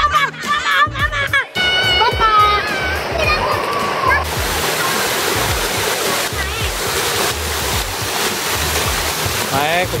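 Background music with a beat and children's shouts, giving way about four seconds in to a steady rush of water pouring and splashing down at a children's water-play area.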